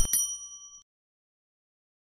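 Quick mouse clicks, then a short, bright notification-bell ding that rings out within about a second. This is the sound effect of a subscribe button's bell icon being clicked on.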